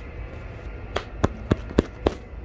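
Fingertips tapping the stretched yellow greenhouse plastic film, four short sharp taps about a quarter second apart in the second half.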